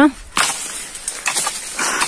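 A sharp crack about half a second in, then rustling of leaves and twigs, as walnut tree branches are struck with a long pole to shake the nuts down.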